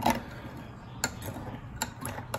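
Metal spoon clinking against a stemmed glass as it stirs thickened water that barely stirs: three light clinks, one at the start, one about a second in and one near the end.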